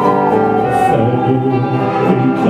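Live band playing a song, with long held notes over guitars.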